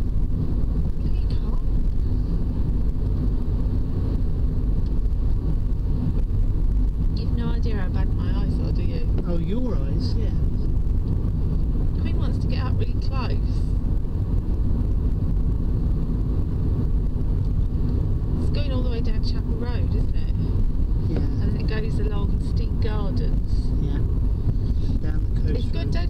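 Car engine and road noise inside a moving car's cabin: a steady low rumble with a constant hum, with quiet voices talking over it from about a third of the way in.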